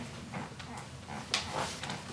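Papers rustling and people shifting at a meeting table, with scattered small clicks and one sharp knock a little over a second in.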